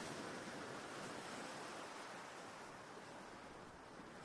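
Faint, even rush of wind and water passing a sailing yacht under way, picked up by the onboard GoPro inside its housing, slowly fading.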